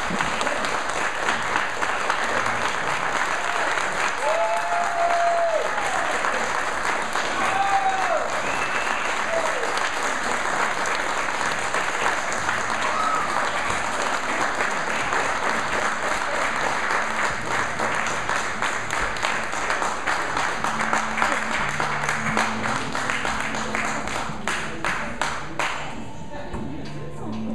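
Audience applauding, with a few cheers over the clapping between about four and thirteen seconds in. The clapping thins into separate claps near the end.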